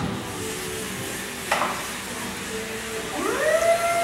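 Electric motor of a Yale walk-behind pallet stacker, first humming faintly with a click about halfway through. Near the end it whines up in pitch and then holds a steady tone.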